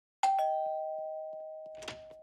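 Two-note 'ding-dong' doorbell chime: a higher note, then a lower one a moment later, both ringing on and slowly fading.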